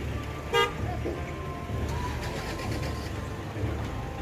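A short vehicle horn toot about half a second in, over a steady low outdoor rumble.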